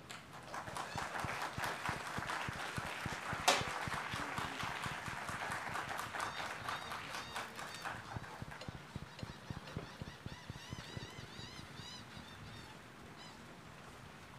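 Light applause from a small audience, rising about half a second in and thinning out after about eight seconds, with one louder clap partway through.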